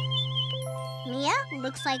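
Gentle children's cartoon background music: a held low note under tinkling chime tones with a wavering high line. About a second in, a child's voice starts speaking over it as the music fades.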